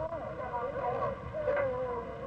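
Electric model train running along its track, a low steady rumble, with children's high voices chattering over it.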